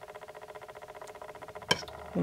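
A steady, rapid buzzing hum made of several evenly spaced tones, with one sharp click near the end.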